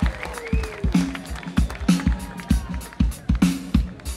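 Live band playing an uptempo groove on drums, bass, electric guitars and Hammond B3 organ. A kick drum thumps on a steady beat, about two to three times a second, between short repeated chord stabs, with cymbals above.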